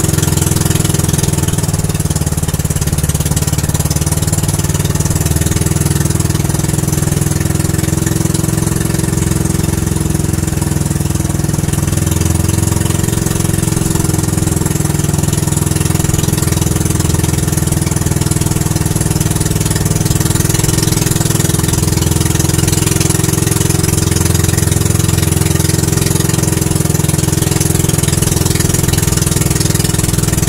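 Motorized outrigger boat's engine running steadily under way, with a constant hiss of wind and rushing water.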